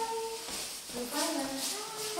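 Voices of a woman and young children: a drawn-out vocal note fading just after the start, then a shorter sing-song vocal sound about a second in.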